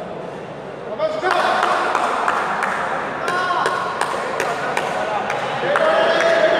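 Players' voices shouting and calling out in an echoing sports hall, rising about a second in and held in long calls, with several sharp knocks scattered among them.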